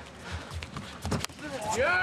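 Faint thuds and foot shuffles from two MMA fighters exchanging in the cage, among them the straight right that drops one of them; a commentator's voice comes in near the end.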